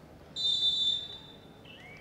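Referee's whistle blown once: a single high, steady blast of about half a second that then tails off.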